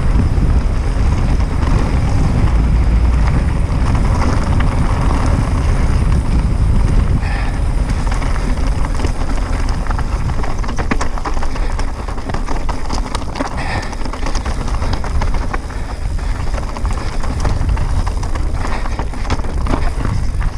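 Wind buffeting a GoPro microphone on a mountain bike descending a loose, rocky trail at speed, with tyres crunching over stones and the bike rattling in many quick knocks. It eases a little in the second half.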